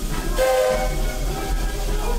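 Steam locomotive whistle blown once: a chord of several steady tones that starts suddenly about half a second in and lasts about a second.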